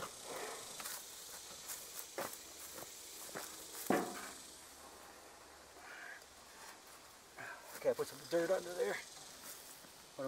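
Faint footsteps and scuffing on dirt and grass, with scattered small knocks and one sharper knock about four seconds in. A voice is heard briefly near the end.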